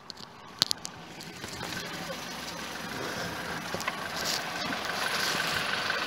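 Vauxhall Corsa 1.2 Ecotec petrol engine idling steadily. It grows gradually louder as the microphone moves down under the engine bay, with a thin steady high whine over the engine hum. There is a single handling click about half a second in.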